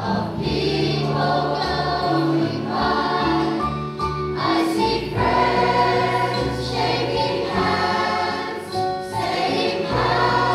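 A community rock choir of women and children singing a song together in harmony over a steady, sustained bass accompaniment.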